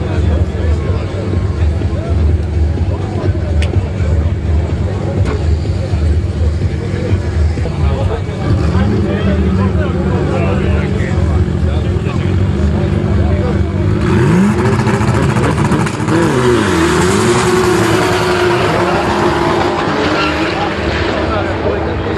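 Drag race cars' engines running at the start line, then revved with rising pitch a little over eight seconds in. About fourteen seconds in a loud rush of noise joins as they launch, the engine pitch climbing and dropping repeatedly through gear changes.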